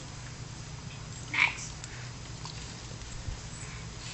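Raccoon giving one short, high call about a second and a half in, over a steady low hum.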